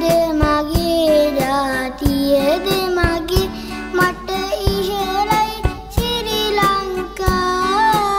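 A boy singing a Sinhala song with instrumental backing. Regular drum hits run under a gliding, bending melody.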